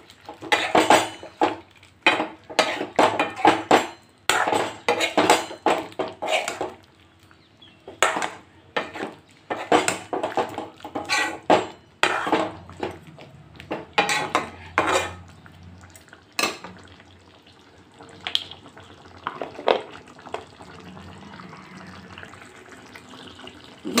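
Metal ladle scraping and knocking against a kadai as thick chicken curry is stirred, in quick irregular strokes. The strokes stop after about sixteen seconds, leaving only a couple of single knocks.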